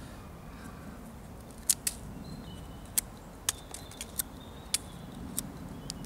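Stainless-steel blade of a Mora Outdoor 2000 knife whittling a wooden stick: a series of short, sharp snicks, about eight of them, starting nearly two seconds in and spaced irregularly, as the edge cuts thin shavings from the wood.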